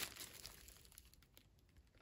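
Faint crinkling of plastic wrapping being handled, fading out within the first half-second, then near silence.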